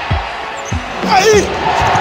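Basketball being dribbled on a hardwood court: about three bounces, roughly two-thirds of a second apart.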